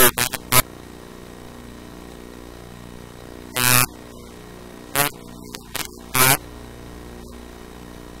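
Steady electrical hum, broken by a few short, loud, harsh bursts about a second or so apart.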